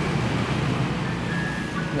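Steady background noise with a low hum underneath, with a faint thin high tone coming in after about a second.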